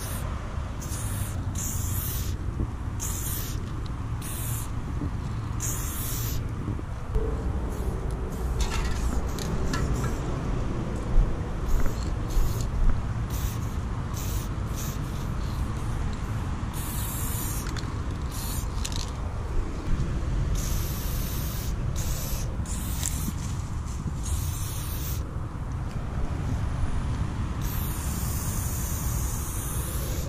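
Aerosol spray paint can hissing in bursts: a quick run of short sprays in the first several seconds, then fewer, longer sprays, the longest near the end.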